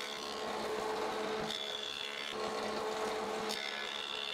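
Benchtop jointer running, its cutterhead taking a thin shaving cut along the glue edge of a wooden guitar body blank as the board is fed across, with a steady motor whine under the hiss of the cut.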